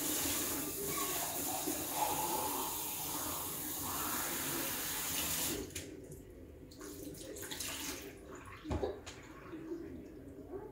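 Water running steadily, like a tap, then shut off abruptly about five and a half seconds in; a few light knocks follow, the loudest near the end.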